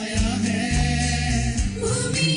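Mixed choir of men and women singing in harmony into stage microphones, over deep held low notes that change every half second or so.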